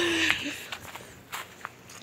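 Footsteps on grass: a few soft, scattered steps and rustles, after a short vocal sound at the very start.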